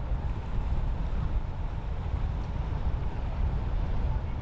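Steady low rumble of wind on the microphone, with faint background noise of water.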